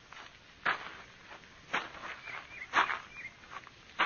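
Radio-drama sound-effect footsteps of a man walking up slowly: three even steps about a second apart.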